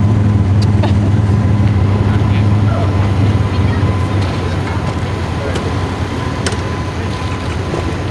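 A steady low engine hum that fades off about three and a half seconds in, over outdoor background noise with faint distant voices.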